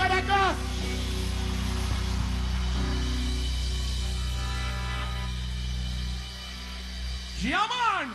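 Live reggae band holding a sustained chord over a steady low bass note. The singer's voice calls out briefly at the start and again near the end in a long cry that rises and then falls in pitch.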